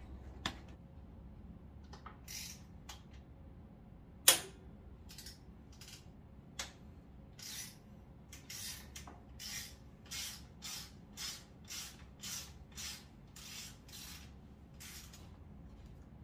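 Hands working on a mountain bike in a repair stand to take off the rear wheel. A sharp metallic click comes about four seconds in, then a steady run of short rasping scrapes, about two a second, for several seconds.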